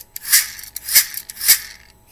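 Small red plastic press-and-go dinosaur toy worked by pushing its mouth down: three short rattling bursts from its wheel mechanism, about half a second apart.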